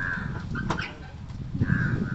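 Two short, harsh bird calls about a second and a half apart, one at the start and one near the end, with a brief sharp click in between.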